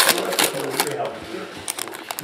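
Trading cards being flipped one by one off a hand-held stack, a quick run of light clicks and snaps.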